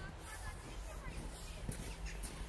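Footsteps crunching in snow as a person walks past, a few irregular steps, with faint short chirps in the background.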